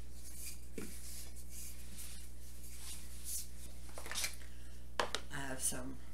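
Rolling pin working over floured pie dough: soft, irregular rubbing and brushing sounds.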